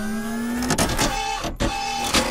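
Logo-intro sound effect: a mechanical-sounding whir with a steady hum and faint rising tones, a cluster of clicks about three quarters of a second in, then a steady higher tone.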